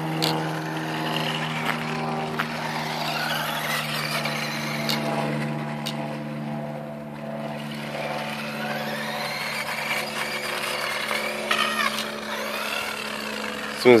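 Electric drive motor of a Maisto Tech Baja Beast RC buggy whining, its pitch rising and falling as the throttle trigger is squeezed and eased, over a steady low hum with a few short clicks.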